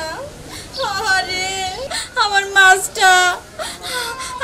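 A woman wailing and sobbing aloud in a high, drawn-out voice, crying out in several long phrases with short breaks between them.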